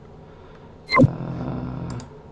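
A single sharp mouse click about a second in, followed by a low steady hum.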